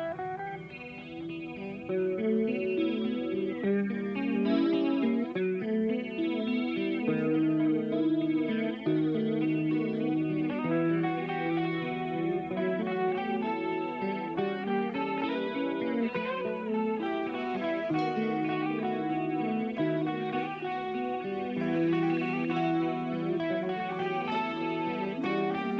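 A live blues band playing, led by several electric guitars over bass, the music getting louder about two seconds in.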